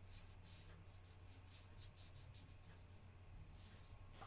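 Faint brush tip of an alcohol marker stroking across paper in quick short streaks, about three a second, stopping near the end as the pen lifts.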